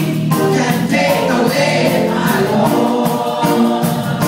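A gospel choir singing with a steady beat behind it.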